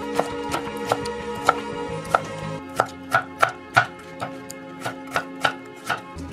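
Chef's knife slicing cucumber on a wooden cutting board: sharp, uneven knocks about two a second as the blade meets the board, over soft background music.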